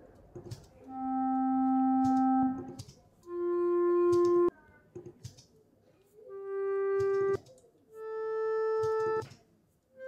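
Recorded clarinet long-tone samples played back one after another: four held notes, each a step higher than the last. Each note swells in gently, softened by a short fade-in on its attack, and stops abruptly.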